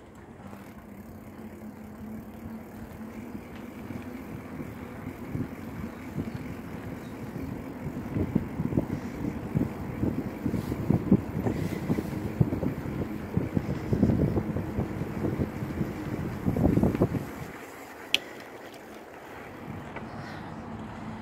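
Wind buffeting the microphone of a camera on a moving bicycle, growing gustier and louder through the middle and dropping away sharply near the end. A single sharp click follows shortly after.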